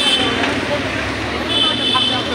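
Busy street ambience: traffic and a crowd of voices. A short, high-pitched steady tone sounds briefly at the start and again near the end.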